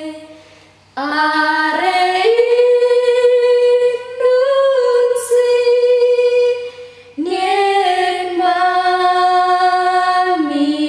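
A woman's voice singing unaccompanied in long, held notes: three sung phrases, with short breaks about a second in and about seven seconds in.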